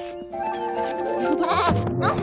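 A cartoon lamb bleating briefly near the end, a short quavering cry, over background music with steady held notes.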